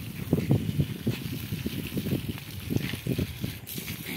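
Water from a garden hose pouring and splashing onto potted plants and soil, over irregular low rumbles of wind on the microphone.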